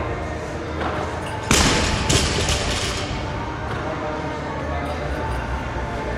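A loaded barbell with bumper plates dropped onto a rubber gym floor: one loud thud about a second and a half in, then a smaller bounce about half a second later.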